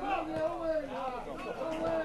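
Voices of players and spectators calling and talking out on an open-air football pitch, heard at a distance.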